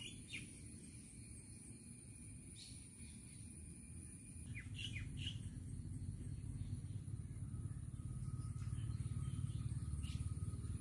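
Brief high bird chirps, a few near the start and a quick cluster about five seconds in, over a faint low rumble that grows louder in the second half.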